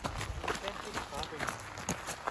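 Footsteps crunching on a gravel trail, a quick uneven run of small ticks, with faint voices behind.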